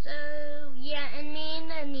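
A girl singing a short phrase of long held notes, the pitch dipping once about a second in and sliding down at the end.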